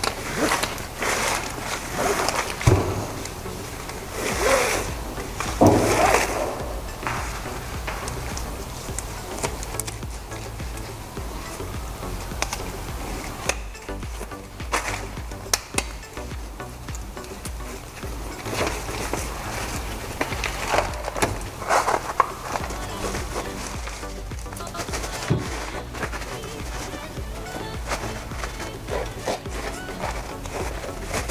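Background music, with the rustle and scrape of fibreglass exhaust wrap being wound around a cast-iron exhaust manifold. The handling comes in irregular bursts, loudest in the first few seconds and again around twenty seconds in.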